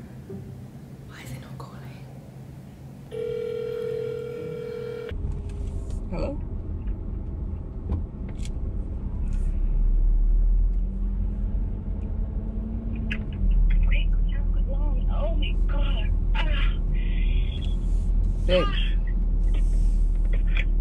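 A phone's ringback tone as a call goes out: one steady ring of about two seconds. Then the low rumble of a car cabin, with bursts of a voice over it near the end.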